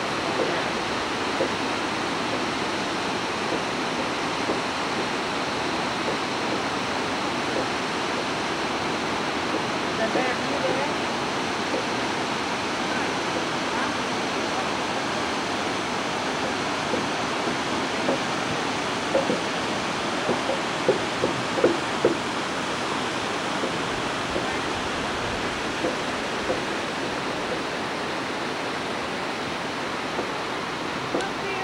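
Water rushing steadily over a shallow, ledged waterfall and rapids. A few brief, louder sounds stand out about two-thirds of the way through.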